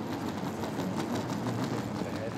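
A wheeled suitcase rolling steadily over a hard tiled floor, under the constant background noise of a busy airport hall.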